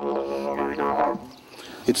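Didgeridoo droning, its overtones wavering and shifting, then dying away after about a second. A man's voice starts just before the end.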